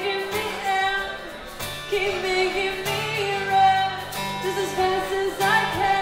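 Live acoustic music: a woman singing a slow melody with held, wavering notes over a strummed acoustic guitar.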